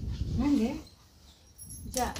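A brief wavering vocal murmur, a single hum-like sound about half a second in, over a low rumble on the microphone.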